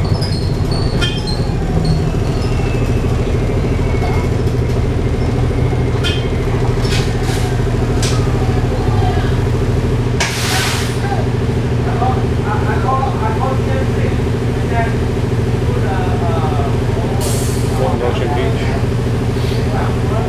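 Interior drivetrain noise of an Orion VII hybrid bus, with a Cummins ISB diesel and a BAE Systems HybriDrive, heard from the rear seats: a loud, steady hum made of several tones. Two short hisses of air are heard, about ten seconds in and again about seventeen seconds in.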